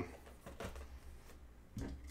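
Faint handling noise of cardboard trading card boxes being picked up and slid across a table, with a couple of soft scrapes, one about half a second in and another near the end.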